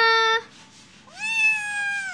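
Ginger long-haired kitten meowing: one call that ends in the first half second, then a longer, higher-pitched meow about a second in that drops off at the end.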